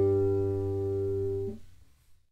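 Classical nylon-string guitar's closing chord ringing on, then damped about one and a half seconds in and dying away.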